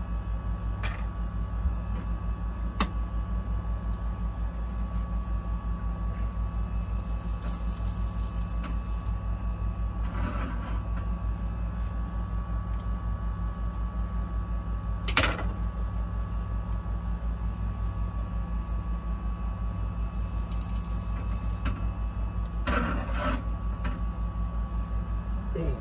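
A steady low mechanical hum with a fast, even pulse, over kitchen sounds from a frying pan on the stove as an omelet cooks. A few sharp utensil clicks come through, the loudest about 15 seconds in, and there are brief scrapes of a spatula in the pan about 10 and 23 seconds in.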